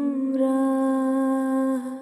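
A woman humming one long, steady note with closed lips. Its pitch dips slightly and it fades near the end: the closing note of an unaccompanied song.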